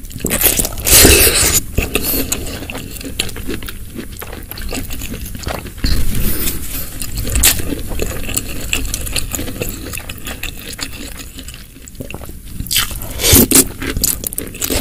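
Close-miked eating of spicy seblak with snow fungus: wet chewing and slurping of the gelatinous, crunchy fungus in broth, with a wooden spoon scraping the glass baking dish. Loud mouthfuls come about a second in and again near the end.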